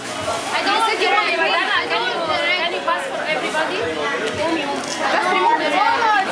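Lively chatter of several children's voices talking over one another, no single voice standing out for long.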